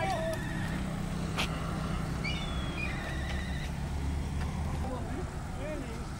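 Outdoor road ambience: a steady low rumble with a few short high chirps and faint distant voices near the end.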